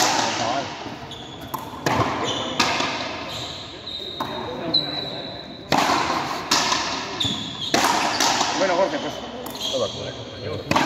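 Frontenis rally: rackets striking the ball and the ball smacking against the frontón wall, a string of sharp, irregularly spaced cracks that ring out in the hall's echo. Spectators' voices can be heard between the hits.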